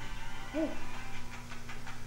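A person's voice calling a short 'hey' over a steady low hum, with faint rapid ticking, about six a second, in the second half.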